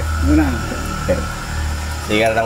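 A person's voice, brief and indistinct, over a steady low hum and a faint steady tone.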